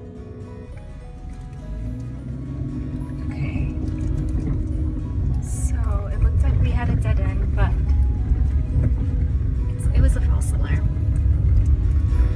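Car driving along a dirt road, heard from inside the cabin: a low rumble of tyres and engine that grows louder about two seconds in. Background music and a voice run over it.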